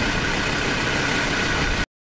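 Steady, loud rushing and rumbling of wind buffeting the microphone, with no distinct events; it cuts off abruptly near the end.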